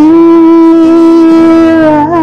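A woman's singing voice holding one long, steady note, its pitch dipping slightly near the end before the song moves on.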